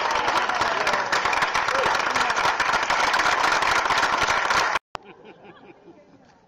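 Crowd applauding and cheering, many hands clapping with shouts and whoops over them. The sound cuts off suddenly near the end, leaving faint voices in a much quieter room.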